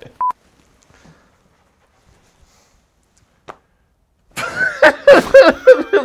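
A short, single beep tone just after the start, then near silence, then loud laughter breaking out about four and a half seconds in.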